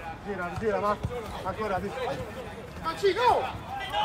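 Men's voices calling and shouting across a football pitch during play, with a single thud of the ball being kicked about a second in.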